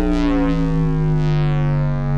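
Opening of a film song: a single sustained synthesizer tone, rich in overtones, its pitch gliding slowly down and then settling into a steady hold.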